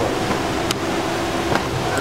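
Steady rushing room noise with two short, sharp knocks, the first just under a second in and the second about a second and a half in.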